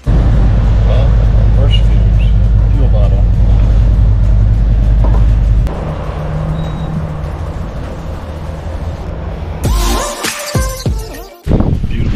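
Motorcycle running on the road with wind on the microphone: a loud, steady low rumble that cuts off about six seconds in, followed by quieter mixed sound.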